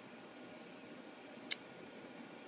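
Faint steady hiss of room noise, with a single sharp click about one and a half seconds in.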